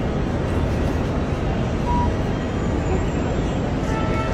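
Steady ambient noise at an airport terminal entrance: an even low rumble with faint background murmur, and one short beep about two seconds in.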